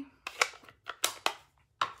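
Four short, sharp clicks and taps of stamping supplies being handled and set down on a craft mat.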